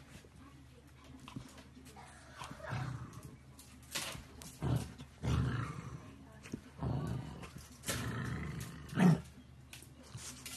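Dogs growling during play-wrestling: a beagle puppy and a larger dog give short bursts of low growls, starting a few seconds in and repeating about every second.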